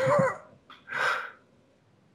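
A person laughing briefly: a short voiced laugh, then a breathy laughing exhale about a second in.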